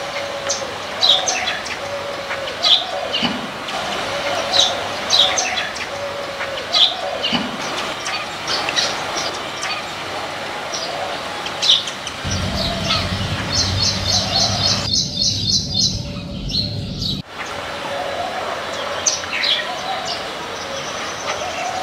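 Small birds chirping: short high chirps scattered throughout, with a quick run of chirps about three quarters of the way in. A low rumble runs underneath for a few seconds a little past the middle.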